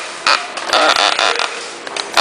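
Rustling and creaking of a plastic bag being rummaged through by hand as a raffle ticket is drawn from it, in irregular bursts.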